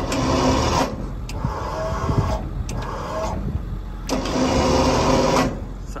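Venturo 5,000-pound truck crane's hydraulic power unit running as the boom is operated: a steady mechanical whine with a rattle. It surges louder twice, briefly at the start and again about four seconds in, with short clicks between.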